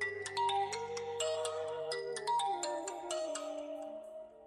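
A mobile phone ringing with a melodic ringtone, a quick run of short bright notes that stops near the end, over soft sustained background music.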